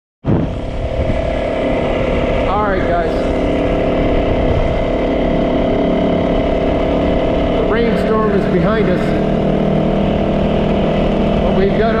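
Yamaha 450 single-cylinder dirt bike engine running at a steady pace while being ridden, its note holding level throughout.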